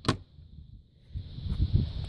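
A cabinet door closing with one sharp click, followed by faint low handling bumps.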